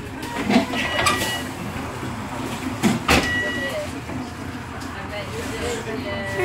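Bus interior with the engine running steadily, a few sharp clacks and two short high beeps in the first half.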